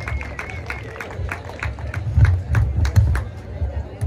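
Handheld stage microphone being passed and held, picked up over the PA as a string of sharp clicks and irregular low thumps, loudest about two to three seconds in, with faint crowd noise behind.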